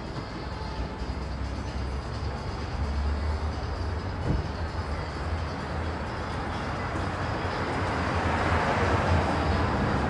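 City street traffic with a steady low rumble; a passing vehicle grows louder over the last few seconds.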